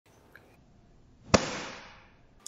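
A single sharp bang about a second and a third in, followed by a fading tail of about half a second.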